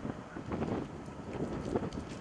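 Wind buffeting the microphone: an uneven rushing noise that swells in small gusts.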